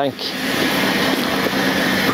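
Steady noise of running aircraft machinery on the ramp, an even rushing hiss with a faint low hum in it, swelling up over the first half second and then holding level.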